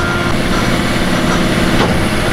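Industrial foam-slicing saw running with its hydraulic system: a steady machine hum.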